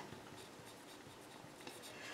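Faint scratching of a pen writing a short note by hand on paper.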